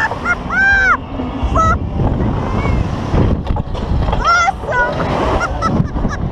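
Two women on a fairground thrill ride letting out short, high shrieks again and again, over a steady rush of wind noise on the microphone.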